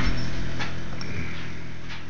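Steady low hum of room background, with a few faint ticks.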